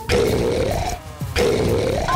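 A cartoon child character's voice growling like a tiger, twice, each growl lasting about a second.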